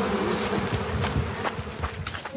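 Honeybees buzzing around a hollow-log beehive in a steady hum.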